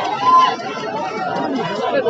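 Crowd of spectators chattering and shouting, many voices overlapping, with one voice rising louder just after the start.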